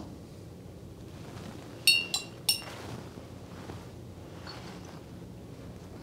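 Three quick, light clinks about two seconds in, each with a brief ringing tone: a paintbrush tapped against the rim of a glass rinse-water jar.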